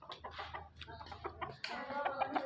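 Chickens clucking: a run of short clucks that get louder near the end.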